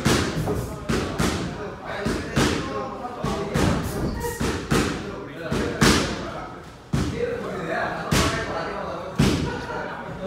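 Irregular thuds and slaps from a boxer's feet stepping and stomping on a boxing ring's padded canvas floor during shadowboxing, coming in quick runs of several a second with short pauses between.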